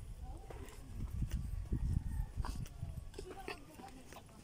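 Footsteps of people walking down a concrete walkway, irregular steps over a low rumble on the microphone.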